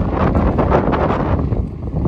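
Wind buffeting the microphone: a loud, gusty rumble, easing slightly just before the end.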